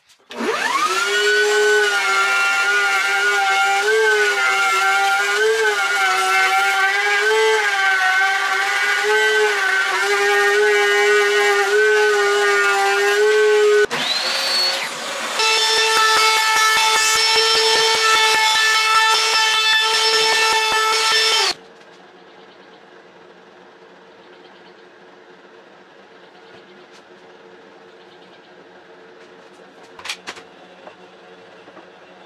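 A benchtop table saw's motor spins up and runs steadily for about thirteen seconds, its pitch wavering slightly. Then a cordless trim router whines up to speed and runs with a high, steady whine as it routes a board edge, cutting off suddenly about two-thirds of the way through and leaving a faint steady hum.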